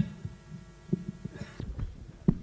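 A sharp click, then irregular low thumps and bumps of a stage microphone being handled on its stand.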